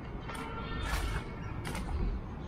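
Footsteps crunching on a dirt path with dry leaves, about one step every half to three quarters of a second at a walking pace, over a low rumble.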